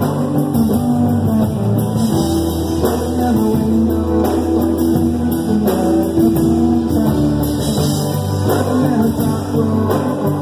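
Live rock band playing loudly: guitar over bass and drums.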